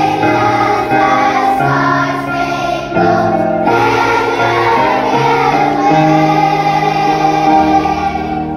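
A children's choir singing a slow song in unison, the notes held and changing every second or so, with one long held note near the end.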